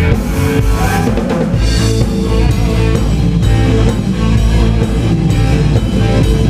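Live blues-rock band playing loud, with drum kit, electric guitar and bass: a steady beat of drum strokes under the guitar.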